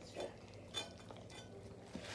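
A dog and a cat eating scraps off a plate: faint eating noises, with a few short clicks and scrapes against the plate.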